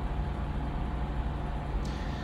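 Steady low hum of room noise with no speech. The level stays even throughout.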